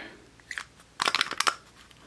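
Small plastic clicks and crackles as a Hello Kitty plastic figure case is twisted and pried at, its stuck halves not coming apart. There is one faint click about half a second in and a quick cluster of clicks about a second in.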